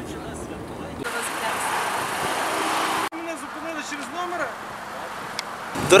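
Road noise in the cabin of a moving car swells over about two seconds and cuts off abruptly. Faint voices follow.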